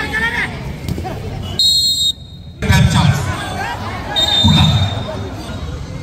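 Referee's whistle blown twice: a sharp blast about a second and a half in and a longer, fainter one about four seconds in. Spectators talk and shout around it.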